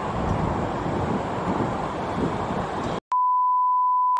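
Steady outdoor background noise that cuts off abruptly about three seconds in, followed by a steady, single-pitched test-tone beep of the kind played with television colour bars, used here as a comic censor bleep.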